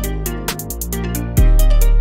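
Melodic trap instrumental beat: fast ticking hi-hats over long 808 bass notes and a melody. About one and a half seconds in, a heavier, louder 808 bass comes in and the whole beat gets louder.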